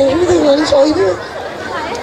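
Speech: one person talking for about the first second, then dropping away to quieter background.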